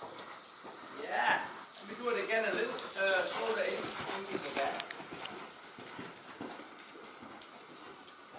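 A voice talking indistinctly for a few seconds over the soft hoofbeats of a horse trotting on arena sand.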